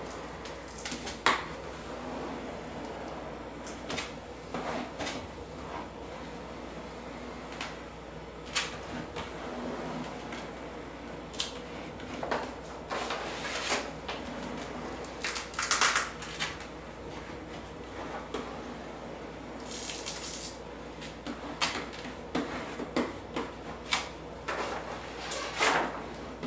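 Plastic squeegee pushed in small strokes over vinyl wrap film on a refrigerator door, with irregular scrapes and rustles of the vinyl as it presses out air bubbles.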